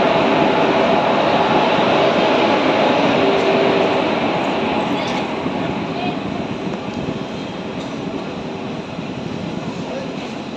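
Train rolling along a station platform. Its running noise is heard over a steady hum, and the rumble eases off after about four seconds.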